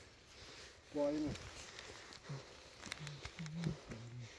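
A man's brief, faint vocal sounds: one short utterance about a second in and a few low murmurs later, with light footsteps on a dirt track.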